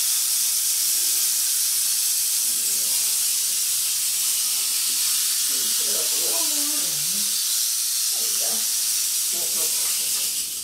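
Mexican west coast rattlesnake rattling its tail in a continuous, steady high buzz, a defensive warning while it is being worked into a clear restraint tube.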